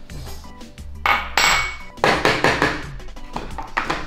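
Small electric blender jar grinding a spice paste in two pulses of about a second each, starting about a second in, with a brief third burst near the end. Background music plays underneath.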